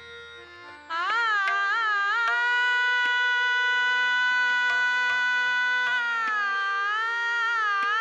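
Female Indian classical vocalist holding a long sustained note, with ornamented wavering turns before and after it, over a steady drone and occasional tabla strokes. The voice comes in about a second in, after a brief lull.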